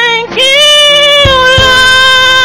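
A single voice singing long, held notes of a worship song, with a brief break and a new note starting about a third of a second in.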